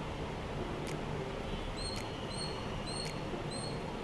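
A small bird chirping in the background: a series of short, high chirps about two a second, starting about two seconds in, over steady room noise with a few faint clicks.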